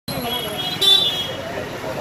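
Vehicle horn sounding in street traffic: a high steady tone for about a second, with one louder short blast just under a second in.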